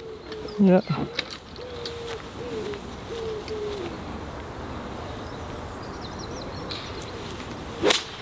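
A golf iron striking the ball once, a sharp crack just before the end: a low punched 7-iron shot played from under trees. Earlier, a bird calls in a run of low notes.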